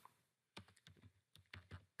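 Faint keystrokes on a computer keyboard: a quick run of about half a dozen key presses, starting about half a second in.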